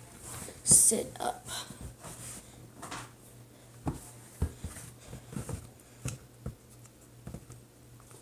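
Hands handling sticky slime and small plastic containers: a string of short clicks, squelches and knocks, the sharpest about a second in, over a steady low hum.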